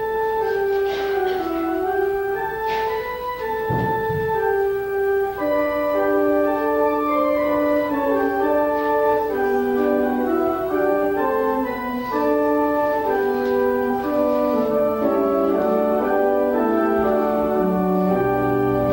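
Church organ playing a hymn: sustained chords moving from note to note, with a fuller sound from about five seconds in.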